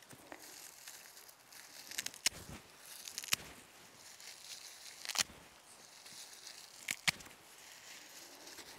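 Handful of pasture grass being plucked and handled: faint rustling of stems with a few short, sharp snaps spread through.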